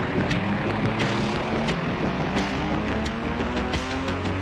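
Hissing static with scattered crackles and clicks, as from a detuned TV or worn tape. Music fades in underneath from about a second and a half in.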